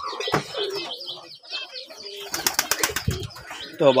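A pigeon flapping its wings in a short flurry of quick wingbeats a little past the middle, among faint chirps and coos from the birds.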